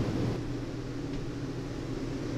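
Steady low background rumble and hiss, with no distinct event.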